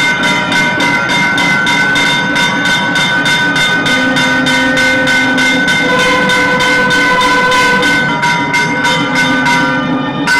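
Temple ritual music during an aarti. A wind instrument holds one steady pitch, over rapid, regular strikes of about three a second. These are typical of a ritual hand bell or percussion.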